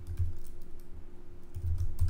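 Computer keyboard typing: a quick, irregular run of key clicks, over a faint steady hum.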